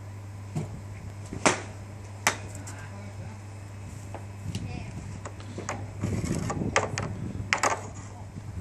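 Golf club striking a ball off a driving-range mat: a sharp click about a second and a half in, then a second sharp click under a second later. Fainter clicks and low voices follow near the end.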